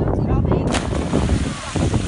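A man jumping off a pier into the sea hits the water with a heavy splash about three quarters of a second in, followed by a rush of churning water.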